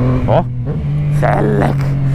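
Yamaha MT motorcycle engine running at a steady pitch while riding, just after rising in revs under acceleration.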